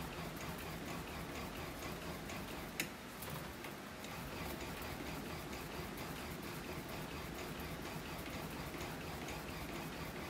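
Light, rapid ticking from a DeMarini Zoa composite bat being rolled back and forth through the rollers of a hand-operated bat-rolling machine during a heat-roll break-in, with one sharper click about three seconds in.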